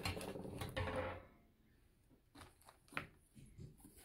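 Handling noise as objects are moved and set down: a rustle lasting about a second, then a few faint, separate taps and clicks.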